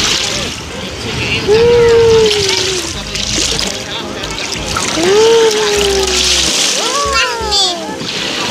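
Small waves washing in over sand and bare feet in very shallow water, with splashing in repeated surges. A voice gives long, falling calls twice, with a shorter one near the end.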